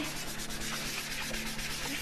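Sandpaper rubbed lightly back and forth over a painted wooden cross, a gentle scuff-sanding of the first coat before the white acrylic base goes on.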